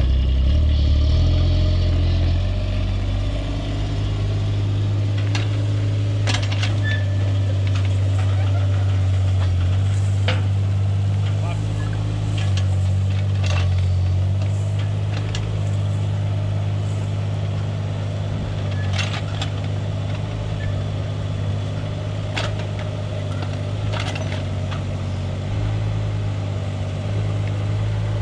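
Kubota mini excavator's diesel engine running steadily as the operator works the boom and lowers the bucket to the ground. A few short metallic knocks and clanks come at scattered moments.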